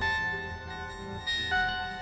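Ambient electronic music from a virtual modular synthesizer patch: piano-like notes, one at the start and two more about a second and a half in, ringing out over a low sustained tone.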